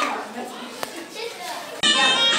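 Children's voices and chatter in a hall during a break in the dance music, with one sharp click just under a second in. Loud music cuts back in near the end.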